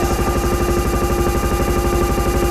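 Drum and bass music played loud over a club sound system and heard from the dance floor: a heavy bass line under steady held synth tones, with no break.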